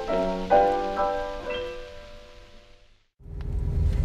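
Piano music with held chords that ring out and fade away to silence. About three seconds in, a low rumble of a car's cabin starts.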